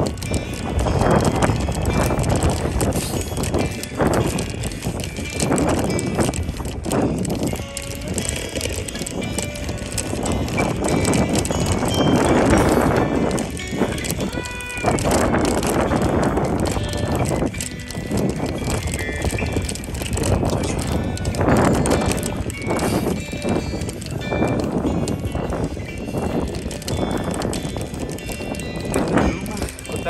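A mountain bike ridden uphill over a rough dirt trail, its frame and parts bumping and rattling unevenly over the ground.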